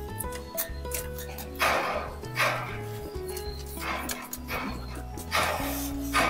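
Background music with held bass notes, broken about four times by short noisy bursts of about half a second each.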